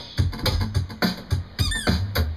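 Drum kit played with bundled rod sticks: a steady beat of deep kick-drum thumps and pad hits. About three-quarters of the way through, a short squeaky sound glides up and down in pitch over the drumming.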